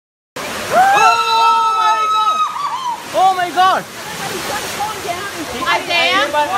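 People's voices shouting and screaming in alarm over a steady rush of water, with one long, high held cry about a second in and sharp rising-and-falling cries near the middle and the end.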